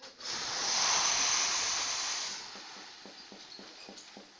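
A long breathy hiss that swells about a second in and fades away over the next two seconds, followed by a few faint ticks.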